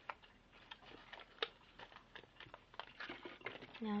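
Small irregular clicks and light rustling of a plastic container and its insert being handled and wiped by hand with a wet paper towel.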